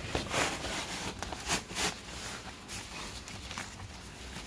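Cordura seat-cover fabric rustling and scraping as it is pulled and worked down over a truck's rear seat cushion, with a few sharper swishes in the middle.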